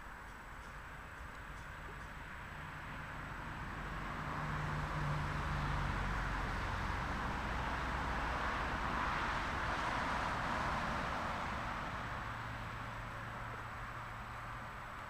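A distant motor vehicle passing by: engine hum and road noise swell over several seconds, then fade, the hum lower in pitch as it goes away.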